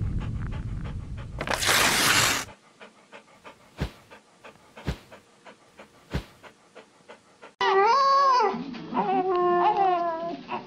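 A low rumble and a whoosh, then a few soft clicks from an animated logo intro. From about three-quarters of the way in, a Siberian husky howls in long calls that rise and fall in pitch.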